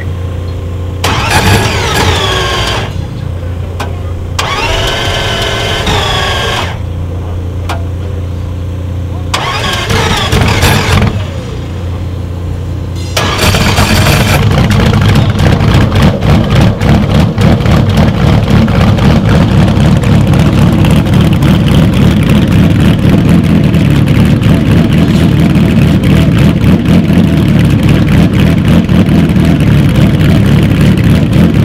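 A 1967 Ferrari 330 P3/4's V12 engine being started. Over a steady low hum there are three short bursts of starter cranking. About thirteen seconds in the engine catches and runs loudly with a rapid, rough beat.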